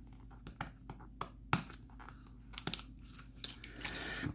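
Packing tape and wrapping being torn and crinkled by hand while a card package is opened: an irregular run of sharp crackles and snaps, the loudest about halfway through and several more close together near the end.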